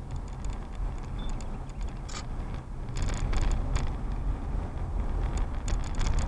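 Road noise inside a moving car: a steady low rumble of engine and tyres, with scattered light clicks and rattles.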